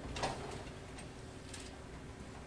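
Quiet room tone in a pause between words, with a few faint ticks or rustles, about one every half second to second.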